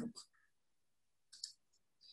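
Near silence with two faint short clicks, one about a third of a second in and one around a second and a half in.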